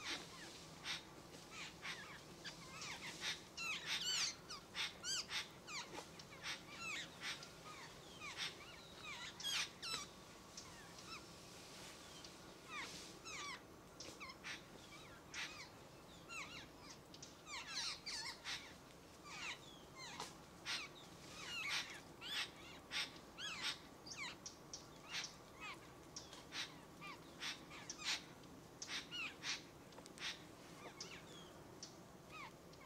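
A busy chorus of birds calling, with many short, harsh calls overlapping. The calls come thickest in the first third and over the last half, with a thinner stretch in between.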